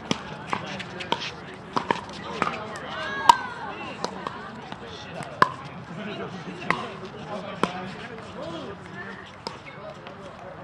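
Pickleball paddles striking plastic balls: sharp pops at irregular intervals, the loudest about three seconds in, over indistinct chatter of players' voices.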